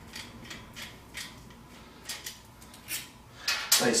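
Phillips screwdriver backing small screws out of a pellet-stove auger gear motor's magnet housing: a series of light, irregular metal clicks a few times a second, with a couple of louder clicks near the end.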